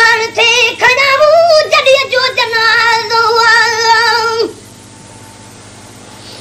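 A solo voice singing a Sindhi naat, unaccompanied and high-pitched, with short melismatic phrases that end in a long held, wavering note. It stops about four and a half seconds in, leaving a faint steady hum.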